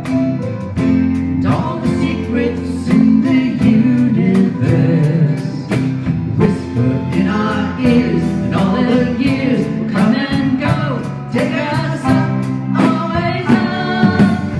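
Live band performing a song: a woman and a man singing, backed by drums keeping a steady beat, electric guitar and piano.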